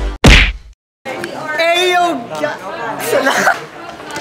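A single loud hit as the intro music ends, then a brief moment of silence, then people's voices talking.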